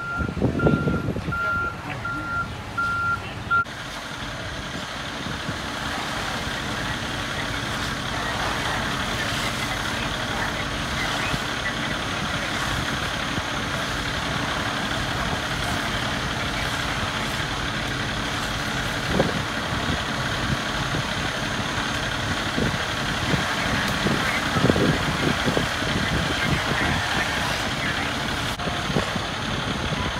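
A vehicle's reversing alarm beeps steadily for the first three or four seconds, then stops. After that comes a steady noise of fire trucks' engines running, with faint, indistinct voices here and there.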